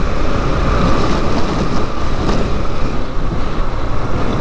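Wind rushing over a helmet-mounted camera's microphone on a moving Yamaha Lander 250 motorcycle, with its single-cylinder engine running under the steady rush.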